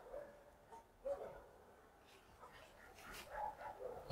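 A dog barking a few times, faint and distant.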